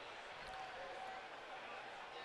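Faint, steady background ambience of a racecourse broadcast, with no distinct sound event.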